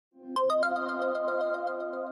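Short electronic intro jingle: three quick bell-like notes stepping upward over a held synth chord, then a few softer notes as it slowly fades.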